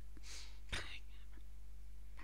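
Two short breathy puffs from a person close to the microphone, like a whispered breath or exhale, the second louder, over a steady low electrical hum.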